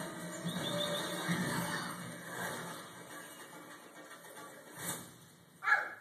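Cartoon soundtrack from a television, with mixed voices and music that fade after the first couple of seconds; near the end, a toddler lets out one short, loud squeal.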